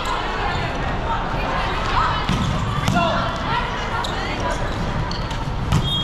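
Volleyball rally in a large hall: players' voices calling over the general noise of play, with a few sharp smacks of the ball being passed and hit.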